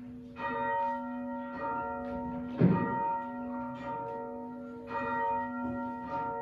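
Church bell rung before a service: repeated strokes about a second apart, each ringing on and overlapping the next. One stroke a little before halfway is louder, with a deep thud.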